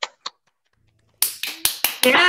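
Applause by hand over the video call: two lone sharp claps right at the start, then, about a second in, a quick, uneven run of sharp claps.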